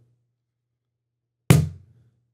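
A wooden cajon struck once by hand about one and a half seconds in, a deep hit that dies away within half a second; the tail of an earlier strike fades out at the very start.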